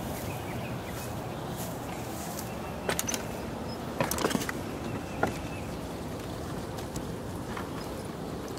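A wooden ladder being climbed, giving a few light knocks and clicks about three, four and five seconds in, over a steady outdoor background.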